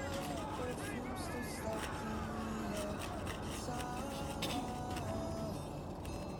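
A man rapping over a hip-hop beat, played back from a music video.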